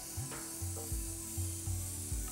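Luminess Air makeup airbrush spraying water out onto a tissue as a steady hiss, the final flush that clears leftover makeup after cleaning. A regular bass beat of background music plays under it.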